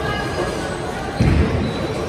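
A bowling ball landing with a single heavy low thud a little over a second in, over the steady chatter and rumble of a busy bowling hall.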